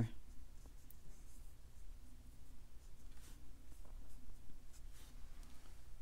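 Round watercolor brush stroking across cold-press watercolor paper, a faint, scratchy, irregular sound of short strokes, over a low steady hum.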